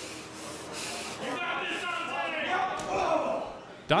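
Indistinct voices echoing in a large hall, rising a little over a second in and fading near the end, then a louder commentator's voice starting right at the end.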